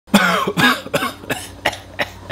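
A man coughing about five times in quick succession, the coughs growing weaker, choking on smoke.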